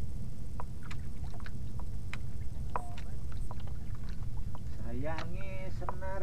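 Steady low rumble of a small fishing boat at sea, with scattered light clicks and knocks from the tackle as a fish is played on a rod. A man's voice comes in about five seconds in.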